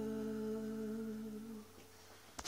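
The last chord of an acoustic guitar ringing out and fading, under a low hummed note that stops a little more than three quarters of the way through.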